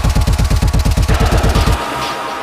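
Industrial techno track: a rapid, loud roll of heavy low drum hits, about ten a second, which stops near the end.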